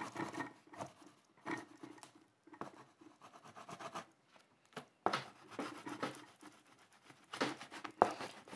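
Oil pastel stick being stroked over drawing paper in short, irregular strokes with brief pauses.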